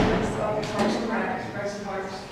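Only speech: a voice talking in a large meeting room.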